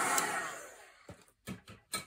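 Craft heat gun blowing, then switched off, its fan winding down with a falling whine over about a second, drying gesso on paper. A few light knocks follow near the end.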